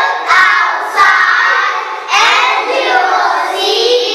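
A group of young children singing together in unison, in phrases of about a second each.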